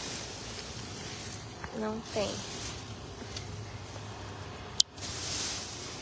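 Plastic trash bags rustling and crinkling as they are pushed and handled, under a steady low hum from a running shredding machine. A sharp click comes just before the end.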